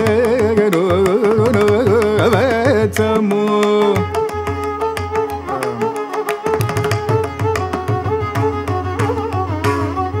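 Carnatic classical music: a male voice sings ornamented, sliding phrases with the violin following closely over a steady drone, while the mridangam plays strokes. About four seconds in the singing drops out and the violin carries on with the mridangam.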